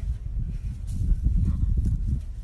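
Wind buffeting the microphone in a low, uneven rumble, with a couple of brief scratchy sounds, about a second apart, as a Labrador puppy starts pawing at the dirt.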